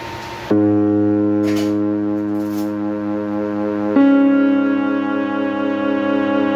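Music: held keyboard chords that start suddenly about half a second in, after a moment of steady hiss, and change to a new chord about four seconds in.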